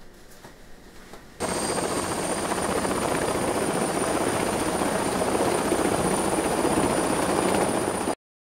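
Faint room tone, then about a second and a half in, autogyro noise starts abruptly: a steady, dense rush of engine and rotor with a thin high whine over it, as the red gyroplane rolls along a runway.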